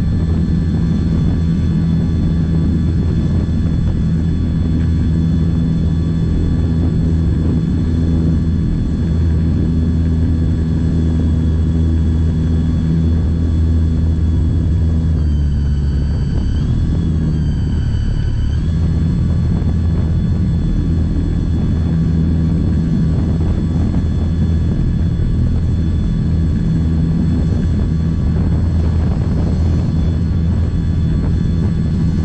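A model aeroplane's motor and propeller running close to the microphone while the model moves along the ground, a steady drone with a high whine. About halfway through, the whine rises, dips and rises again for a few seconds as the throttle changes, then settles back.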